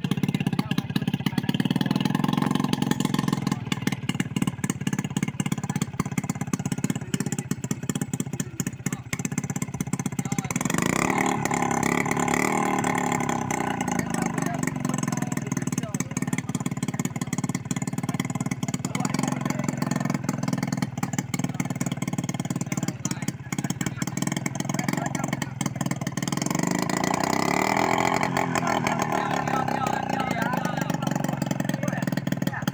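Small outboard engine on a plywood powerboat running on a test run, its pitch shifting as the throttle is worked about a third of the way in and again near the end.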